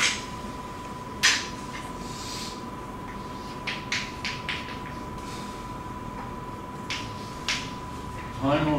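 Chalk tapping and scratching on a blackboard as symbols are written: short, sharp clicks scattered irregularly, the loudest about a second in and a quick cluster near the middle.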